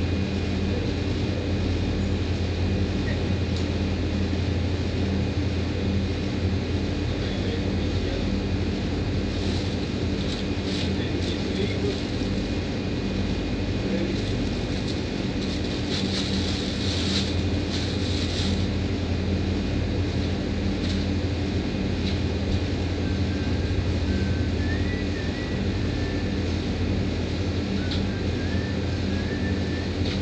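Wall-mounted air-conditioning units running with a steady electrical hum and fan noise. Light clattering and rustling come and go between about ten and twenty seconds in.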